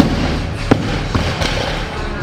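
A 165 kg barbell loaded with Eleiko bumper plates dropped from overhead onto the lifting platform: a heavy impact right at the start, then a bounce about 0.7 s later and smaller knocks as it settles.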